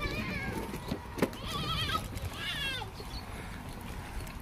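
Goats bleating: a few short, high, quavering bleats, the clearest about one and a half and two and a half seconds in. A single sharp knock comes a little after a second in.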